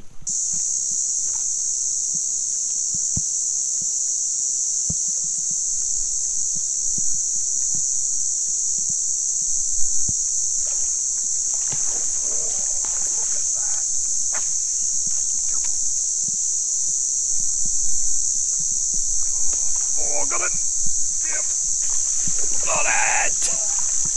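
A steady, high-pitched insect chorus, one unbroken buzz that sets in abruptly and holds level throughout. A man's brief exclamations come through around the middle and again near the end.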